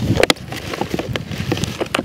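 Large mangos being worked out of a bucket by hand: a quick string of sharp knocks and rustles as the fruit bumps against the bucket.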